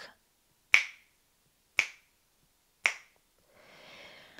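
Three crisp finger snaps about a second apart, keeping time through a held breath during alternate-nostril breathing, followed by a faint hiss near the end.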